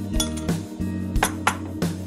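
A few sharp clinks of a metal spoon against a ceramic bowl as beaten egg is scraped out, over steady background music.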